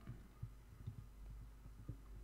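A few faint computer keystrokes and a mouse click, soft short taps over a low steady hum.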